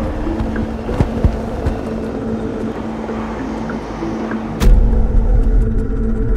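Instrumental intro of a reggaeton track: sustained synth notes changing pitch, with a sharp hit about four and a half seconds in as a heavy bass beat comes in.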